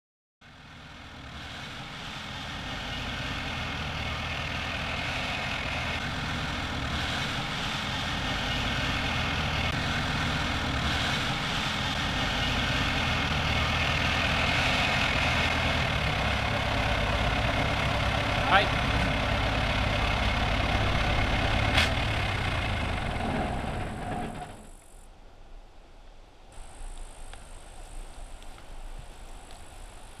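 Armoured tracked vehicle's engine running loud and steady under way, heard from on board the StuG III. It drops away abruptly about three-quarters of the way through, leaving a much quieter background, with two sharp clicks a few seconds before that.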